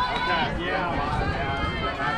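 Several people's voices talking and calling out at once, the words unclear: chatter from players and spectators around a softball diamond.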